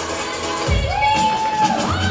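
Stage walk-on music: a held high note with a deep bass beat coming in under it a little under a second in.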